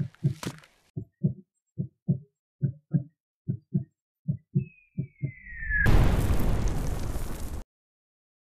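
Heartbeat sound effect, paired low thumps about once a second, then a short falling whistle and a loud rushing blast like an explosion that cuts off suddenly.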